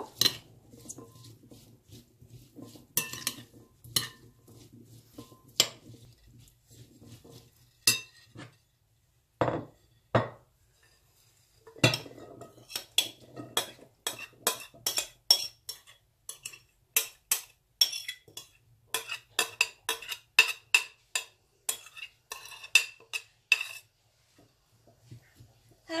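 A metal spoon clinking and scraping against a glass bowl as chickpea salad is stirred and then turned out onto a plate. Scattered clinks come first, with a couple of duller knocks near the middle, then a fast run of ringing clinks through most of the second half.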